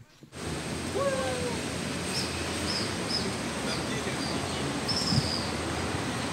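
Steady outdoor noise picked up by an amateur's handheld microphone. About a second in there is one short rising call, and in the middle a few short high chirps.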